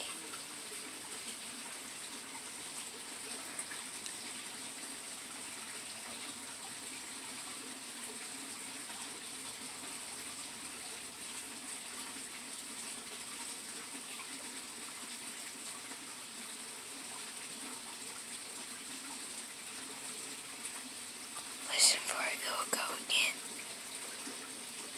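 Faint, steady background hiss, with a few seconds of whispering near the end.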